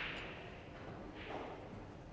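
Quiet ambience of an indoor playing hall, a faint even hiss with a soft muffled sound about a second and a half in.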